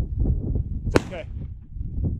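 A single shotgun shot about a second in, a sharp crack heard from some distance, over low wind rumble on the microphone.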